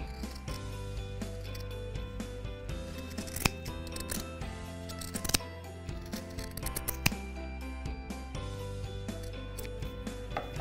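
Scissors snipping through folded felt: a scatter of short, sharp cuts, the clearest about three and a half, five and seven seconds in. Soft background music plays underneath.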